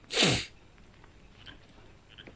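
A single sneeze: one short, loud burst with a falling pitch, lasting under half a second.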